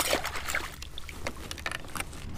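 Water splashing and dripping at the side of a kayak as a crappie on a chain stringer is lowered into the lake, with a few small clicks and splashes, the first and loudest right at the start.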